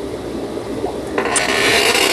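A low steady hum, then from about a second in a louder rubbing, scraping noise.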